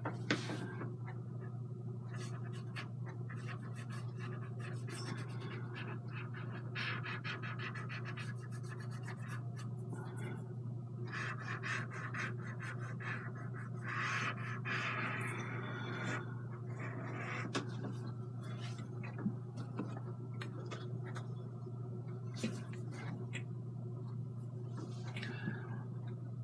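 A cotton swab rubbing and scratching against an oil underpainting, wiping paint away, in faint irregular strokes that grow louder for two stretches near the middle. A steady low hum lies underneath.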